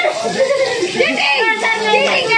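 Several young men's voices talking and calling out over one another, with no pause.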